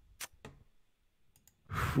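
A few faint, sharp clicks spread over a quiet pause. Near the end comes a breath, leading into speech.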